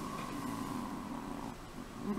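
A person's drawn-out, steady hum of hesitation, held on one pitch for about a second and a half and then trailing off.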